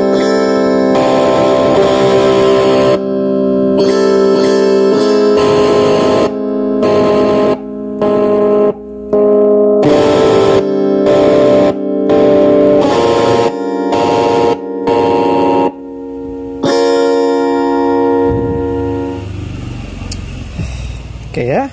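Electric guitar played through a Behringer UM300 Ultra Metal distortion pedal: about a dozen heavily distorted chords, each held a second or two and cut off sharply. The sound shows the pedal working again after its broken circuit-board traces were repaired.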